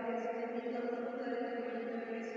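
Chanted prayer: voices holding long, steady notes that change pitch only slowly.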